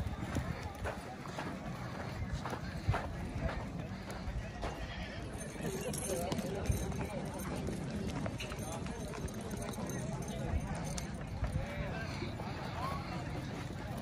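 Horses walking on a dirt track, their hoofbeats coming as irregular soft knocks, with people talking indistinctly in the background.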